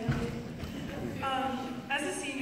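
A woman speaking into a microphone over a hall's sound system, in short phrases with pauses. A low bump sounds right at the start.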